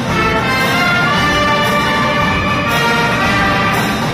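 Massed brass band with sousaphones and drums playing, mostly long held chords that change a few times.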